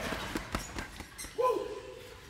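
Boxing gloves striking heavy punching bags: a few sharp thuds in the first part, followed by a short held vocal call about one and a half seconds in.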